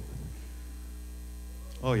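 Steady electrical mains hum, low and unchanging, with a ladder of faint overtones above it.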